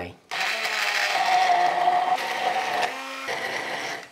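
Hand-held immersion blender running in a glass measuring jug, puréeing chunks of salmon, cherry tomatoes, garlic and basil. It starts a moment in with a steady motor whine, the note shifts lower about three seconds in, and it stops at the end.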